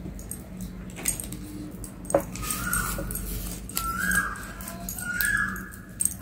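An animal's short high whining calls, repeated about every second and a half from a couple of seconds in, over light taps and rustling of paper being rolled between the fingers.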